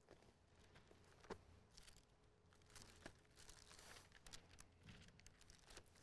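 Near silence with faint, scattered rustles and light clicks of paper pages being handled and turned at a lectern.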